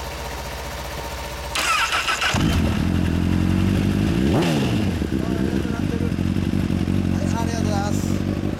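A 2013 Honda CBR1000RR's inline-four engine breathing through an aftermarket muffler is started. The starter cranks about a second and a half in and the engine catches just after two seconds. It takes one quick blip of the throttle, its pitch rising and falling, and then settles into a steady idle.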